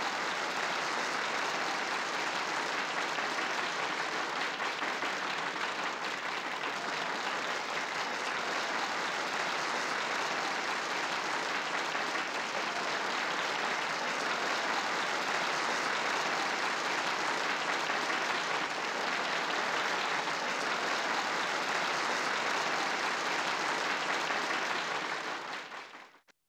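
A large audience applauding, a steady, sustained clapping that fades out near the end.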